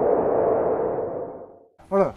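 Title-card sound effect: a noisy, whoosh-like swell with a steady low tone running through it, dying away shortly before the end. A man's voice starts just as it ends.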